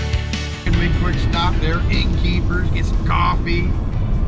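Rock music that stops abruptly under a second in, followed by steady low road rumble inside a car with indistinct voices.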